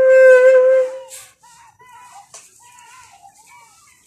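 Tenor saxophone holding the closing long note of the tune, with a slight waver in pitch, which dies away about a second in; after it only faint background sounds remain.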